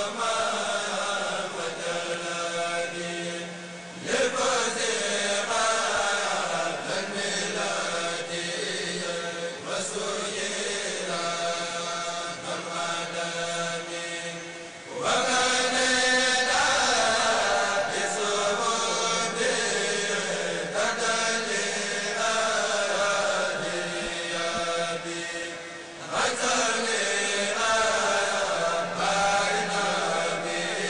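A group of men chanting Arabic devotional verses together through a loudspeaker system, in repeated melodic phrases. The chanting swells louder as new phrases begin, about four seconds in, halfway through and near the end.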